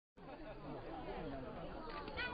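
Faint background chatter of several people talking at once, no single voice standing out.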